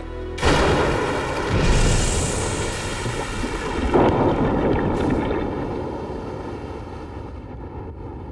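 Explosive charges set in a tunnel rock face detonating: a sudden loud blast about half a second in, then a rumble that surges again around two and four seconds and slowly dies away. Music plays underneath.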